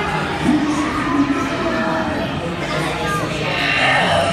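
Continuous dark-ride soundtrack: music under a busy mix of voices.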